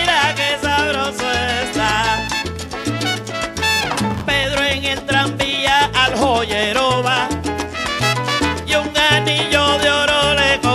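Salsa music playing: a bass line stepping between notes under a melodic lead, with no singing.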